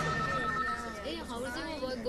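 Electronic telephone ringing, a two-tone ring lasting about a second, over the chatter of many overlapping voices.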